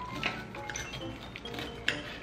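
Background music, with a few light clinks of a knife and fork against a plate as a breaded pork cutlet is cut. The sharpest clink comes near the end.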